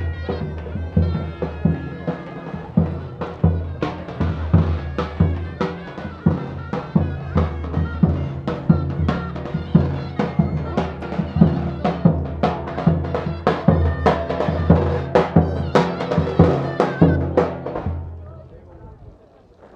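Loud traditional festival music. A drum beats a strong, regular rhythm, and a reedy wind instrument holds high notes during the first couple of seconds.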